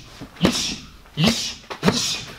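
Punches smacking into leather focus mitts, three sharp strikes in two seconds, each followed by a short hissed exhale and a brief grunt from the puncher.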